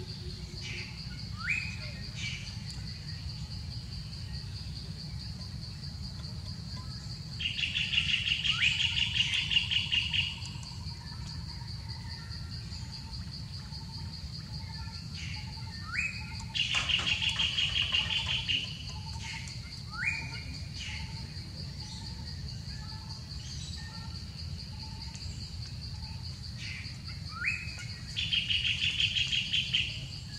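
A steady high insect drone runs throughout. A bird repeatedly gives short rising whistles and three loud, rapid trills of two to three seconds each, about ten seconds apart.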